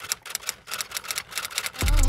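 Typewriter-key sound effect: a quick run of light clicks, about seven a second. Music with a bass beat and a singing voice comes in near the end.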